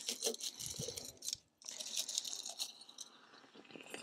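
Crumpled aluminum foil being dropped into a glass flask of hydrochloric acid: light crinkles and a scatter of small clinks against the glass. Under them is a faint hiss as the acid starts to attack the aluminum.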